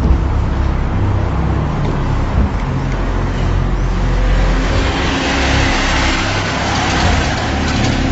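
Street traffic: a car passing close by, its tyre hiss swelling about halfway through, over a steady low rumble.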